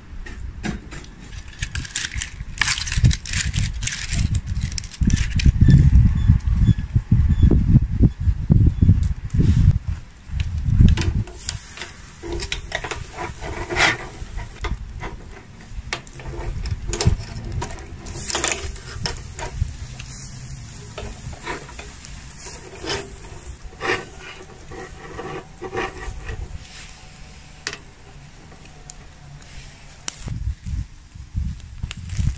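Metal kebab skewers clinking and clattering as loaded skewers are laid across a charcoal grill, with irregular sharp clicks all through. A heavy low rumble on the microphone is loudest in the first ten seconds or so, then drops away.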